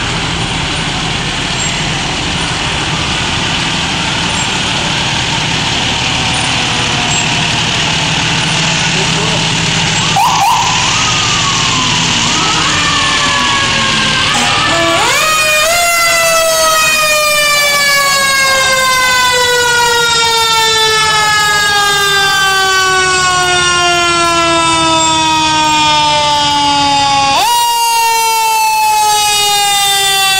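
Fire truck siren: short rising chirps about a third of the way in, then wound up and left to fall slowly in pitch for about twelve seconds, then wound up again near the end and falling once more. Before the siren, the diesel engines of the passing fire trucks run under the street noise.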